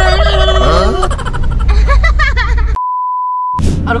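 A single steady high-pitched bleep lasting under a second, edited in with all other sound silenced under it. Before it, voices over the low rumble of a car cabin.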